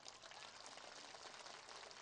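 Faint applause from an audience, heard as a soft, steady crackle of many small claps.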